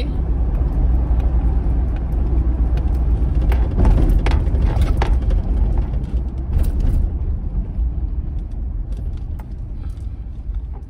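Low rumble of a car heard from inside the cabin, with engine and road noise, easing off over the second half.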